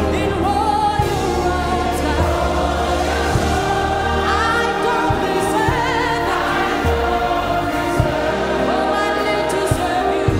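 Gospel worship music: a choir singing long, held notes over a sustained bass line, with occasional sharp percussion hits.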